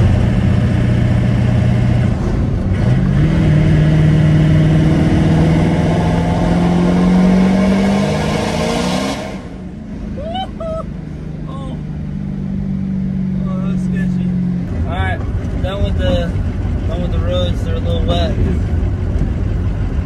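Ford 6.0 Power Stroke V8 turbodiesel pulling hard under throttle, heard from inside the cab: its pitch climbs steadily for about six seconds under a loud rushing hiss. It lets off about nine seconds in and settles to a lower, steady drone, which drops again a few seconds later.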